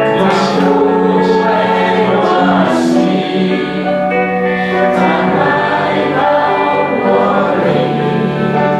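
A group of voices singing a Mandarin Christian praise song together over a steady instrumental accompaniment, with no break.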